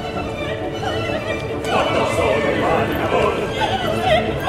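Operatic voices singing with strong vibrato over an orchestra. The wavering vocal lines grow prominent about halfway through.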